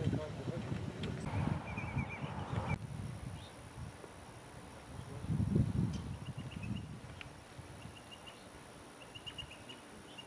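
Open-air ambience with faint, indistinct voices, and a bird calling in short, repeated high chirps through the second half.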